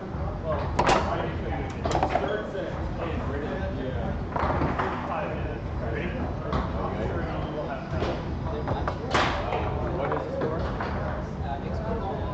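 Foosball being played: the ball is struck by the rod-mounted players and knocks against the table, giving sharp knocks at irregular intervals, the loudest about a second in and about nine seconds in.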